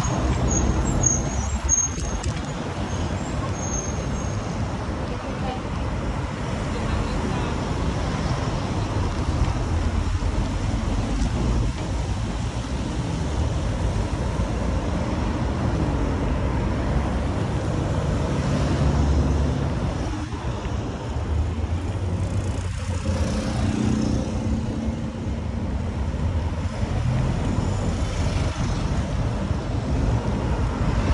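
Steady low rumble of a bicycle ride along brick paving beside a busy road: wind on the microphone, tyre noise and road traffic passing.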